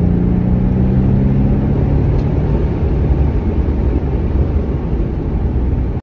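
Mercedes-AMG C63's M177 twin-turbo V8, fitted with BMS aftermarket air intakes, running while driving and heard from inside the cabin. A strong, steady engine drone drops away about two seconds in, leaving a low rumble.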